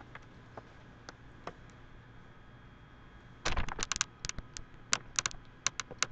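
A few faint scattered clicks over quiet room tone, then from about three and a half seconds in a quick run of sharp clicks and taps: handling noise as the camera is picked up and turned around.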